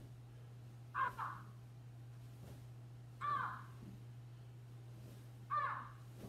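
A bird calling three times: short harsh calls about two seconds apart, over a faint steady low hum.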